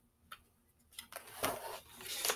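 Large paper pages of a big book being turned: a few light clicks, then paper rustling that grows in the second half.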